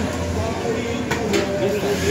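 Busy market eatery ambience: background voices under a steady low hum, with two sharp clicks just past the middle.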